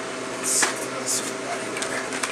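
Steady room hum with two short, soft hisses about half a second and a second in.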